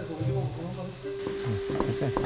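Spicy squid stir-fry sizzling in a frying pan while a wooden spatula stirs and scrapes through it.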